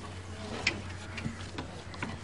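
A few faint clicks and taps as hands work the nylon rope lacing of a chenda drum to tighten it, the sharpest click about two-thirds of a second in, over a low steady hum.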